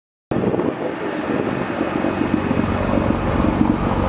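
Nissan GT-R R35's twin-turbo V6 idling steadily. The sound starts a moment in, after a brief silence.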